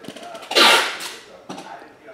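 Trading cards being handled: a few light clicks, then a brief swish about half a second in as a card slides against the others and is flipped over.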